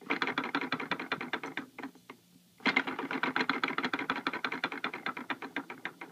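Plastic ladybug rattle toy on a baby seat's tray clicking rapidly as a hand shakes and turns it. The clicking comes in two long runs with a short break about two seconds in.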